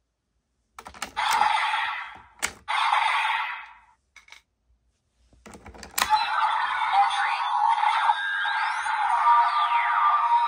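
Desire Driver toy belt being handled: plastic clicks and two short bursts of hissing sound in the first few seconds. About six seconds in, a sharp click as the Getsy Core ID snaps into the driver's centre, then the belt's electronic music and effects from its small speaker, with steady tones and pitches sliding up and down.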